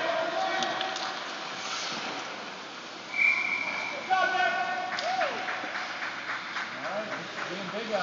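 Ice hockey referee's whistle: one short, high, steady blast about three seconds in, amid shouting voices.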